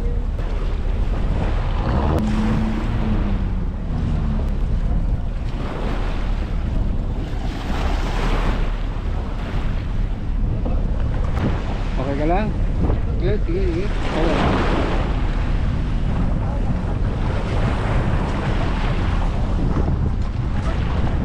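Wind buffeting the microphone over small waves washing at the shoreline, a steady rushing noise that swells and eases every few seconds. Brief snatches of voices come through twice.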